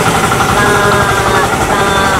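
An engine idling steadily, a low rapid pulsing rumble throughout, with a faint voice over it.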